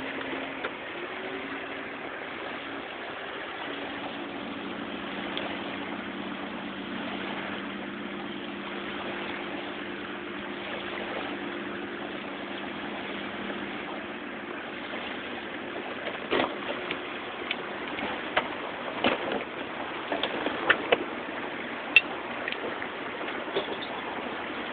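Small waves lapping on a sandy lake shore, a steady wash of water, with an engine's steady drone over it that rises in pitch at the start and dies away about two-thirds of the way through. In the last third, sharp slaps and clicks come at irregular intervals.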